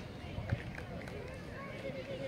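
Distant voices of children and adults calling across a playing field, with one sharp thud about half a second in: a soccer ball being kicked.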